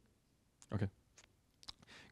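A few faint clicks from a laptop being worked by hand, over a quiet room, with one short spoken "okay" a little before the middle.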